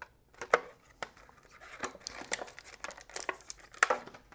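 Clear plastic SSD packaging being handled and opened by hand: light crinkling and rustling with scattered sharp plastic clicks, the loudest about half a second in and another near the end.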